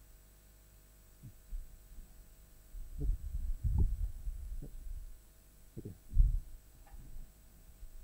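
Dull low thumps and bumps of microphone handling and movement, a cluster about three to four seconds in and a stronger single one around six seconds, over a faint steady hum.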